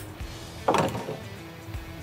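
A sharp click, then a brief scraping rattle of a socket and extension being shifted by hand in a truck's engine bay.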